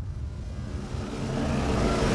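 A rising whoosh sound effect swells steadily louder over background music with held low notes, building toward the next beat.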